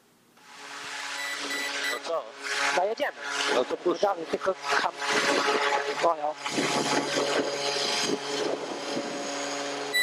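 PZL M28's twin Pratt & Whitney PT6A turboprops at takeoff power, heard from inside the cockpit: a steady engine and propeller drone with a hiss that swells up within the first second. Crew voices come through over it at times.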